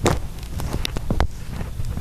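Low steady rumbling background noise with several short sharp clicks, the loudest right at the start and a cluster around a second in.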